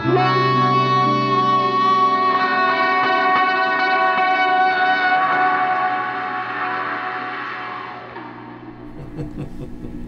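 Acoustic guitar played through effects pedals, holding long sustained melody notes that change pitch a few times, then letting the last note ring out and fade over the final few seconds. Faint handling clicks come near the end.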